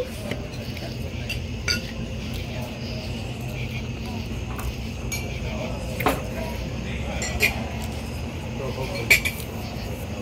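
A metal fork clinking against a plate, four sharp clinks spread through a few seconds, over a steady low hum and faint background chatter.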